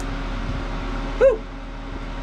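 A man's short cheer of "woo!" about a second in, rising and then falling in pitch, over a steady low hum.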